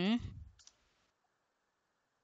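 A man's short 'uh-huh', then a single sharp click about half a second later, from a computer keyboard key being typed.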